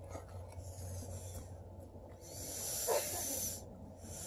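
A goat's long, hissy breath or snort close to the microphone, starting about two seconds in, with a short knock near its end.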